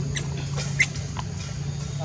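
Baby macaque giving a few short, high squeaks, the loudest a little under a second in, over a steady low hum.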